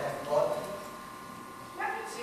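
An actor's voice on stage: two short, high-pitched vocal sounds, one near the start and one near the end.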